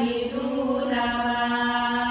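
A group of women's voices chanting together in unison, each phrase drawn out on long, steady held notes.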